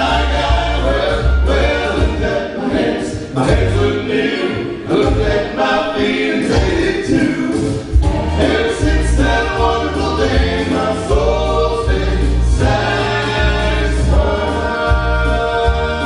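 Male gospel vocal trio singing in harmony through microphones, over instrumental accompaniment with a sustained deep bass line.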